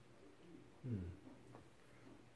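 A man's short, low 'hmm', falling in pitch, about a second in.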